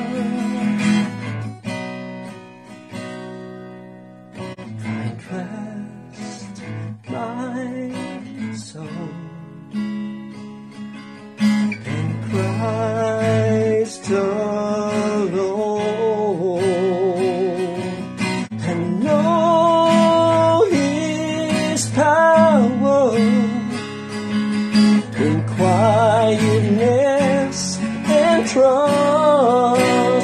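Acoustic guitar strummed, softly at first and then louder from about twelve seconds in, with a man's voice singing over it in the second half.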